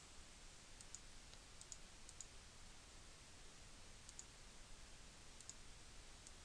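Near silence, with a few faint, short clicks of a computer mouse scattered through it.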